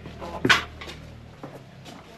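A single short, sharp clack about half a second in, like a door or panel knocking shut. Two faint ticks follow later, over a low steady hum.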